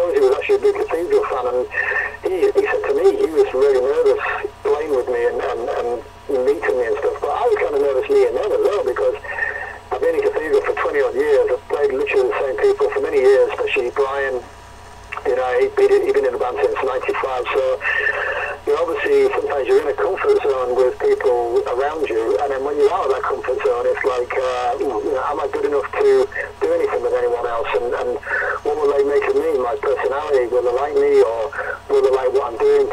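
A person talking almost without a break, over a thin, narrow-band line like a telephone call, with a few short pauses.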